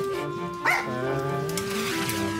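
Background music with steady held notes, and a dog barking once, briefly, less than a second in.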